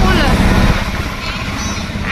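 Auto-rickshaw engine running, heard from inside the passenger compartment as a rapid low chugging; it drops in level a little under a second in.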